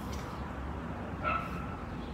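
A dog barking once, a short pitched yelp about a second in, over steady outdoor background noise.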